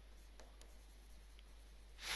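Near silence, with a few faint ticks and light scratching from a stylus writing on a touchscreen.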